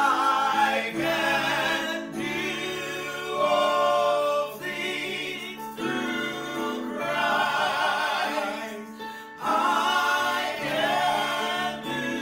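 A man and a woman singing a gospel praise song together, in held phrases broken by short pauses every couple of seconds.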